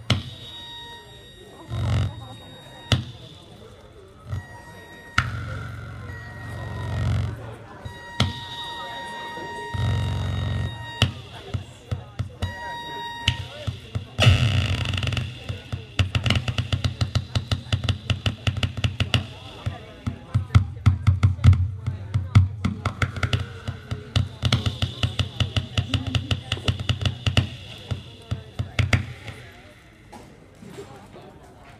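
Live noise music from hand-built DIY electronic circuits played through a small mixer. First come bursts of low drone under steady high-pitched tones and short beeps. About halfway through, it turns into a dense, rapid stuttering pulse that cuts off near the end.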